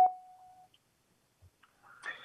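A single short electronic tone, like a beep, right at the start, holding one steady pitch and fading out within about half a second.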